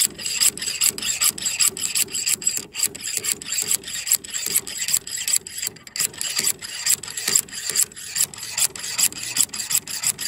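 Steel slide hammer being worked to pull a stuck pin from an outboard motor's mount: the sliding weight slams repeatedly against its stop in a metallic clank, about three blows a second. The pin has not yet come free.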